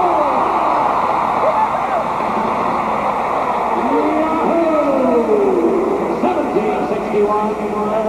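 Crowd din in a huge indoor rodeo arena, from an old home-video recording, with drawn-out voices echoing through it.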